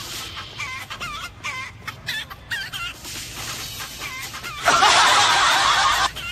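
Caged hens clucking: a run of short, wavering calls. Near the end comes a loud, harsh noise lasting a little over a second, the loudest part.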